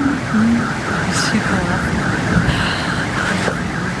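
A car alarm warbling, its pitch rising and falling about three times a second, over the steady hiss of heavy rain.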